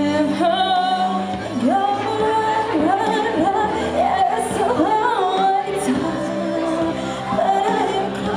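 A girl singing a slow pop ballad live into a microphone, with long held notes and sliding pitch, over an instrumental backing.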